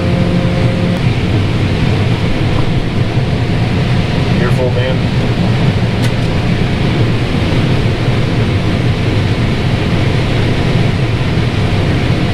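John Deere combine running steadily while harvesting corn and unloading grain through its auger into a cart alongside, heard from inside the cab as a loud, even machinery drone.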